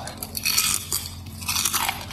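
Close-up crunching and chewing of a crisp, shredded fried potato snack (keripik kentang mustofa), in two bouts: about half a second in and again near the end.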